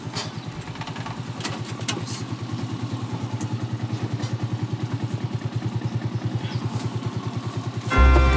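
Mototaxi's small motorcycle engine idling with a quick, even pulsing beat.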